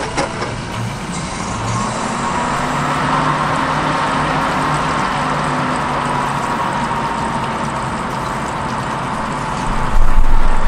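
A click, then a desktop PC with a liquid CPU cooler, a hybrid-cooled graphics card and five hard drives powering up. Its fans and drives spin up into a steady whirring hum with a faint whine, building over the first three seconds and then holding.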